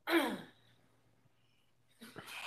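A person clearing their throat once: a short, breathy sound falling in pitch, about half a second long.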